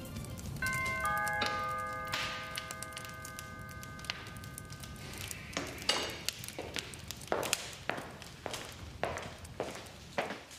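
A doorbell chime, two notes struck about half a second apart that ring on for a few seconds, followed by steady footsteps at about three steps a second.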